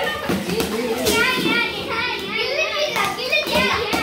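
Several children talking and squealing excitedly over one another, with wrapping paper rustling and tearing as they pull it off a parcel.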